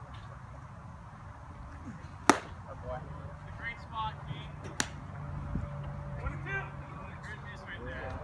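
A baseball pitch popping sharply into the catcher's leather mitt a couple of seconds in, the loudest sound here, followed by a second, fainter crack nearly five seconds in. Faint voices of players come and go around them.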